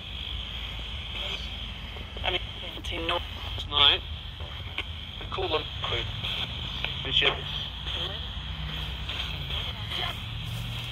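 Handheld radio used as a ghost-hunting spirit box, sweeping through stations: a steady hiss of static broken by about six short, chopped-off fragments of voices, the loudest about four seconds in.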